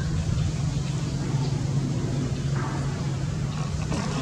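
A steady low hum from a running motor. A brief faint rustle comes about two and a half seconds in.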